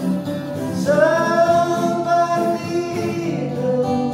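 Two acoustic guitars playing a song with a man singing. The voice comes in about a second in with a long held note, and a new phrase starts near the end.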